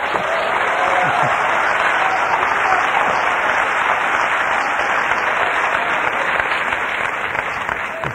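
Church congregation applauding steadily for several seconds, with a few voices calling out underneath; the clapping starts to die away near the end.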